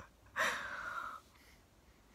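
A woman's single sharp, nervous breath, in or out, lasting under a second and starting about half a second in, just before she tastes a jelly bean she is scared of.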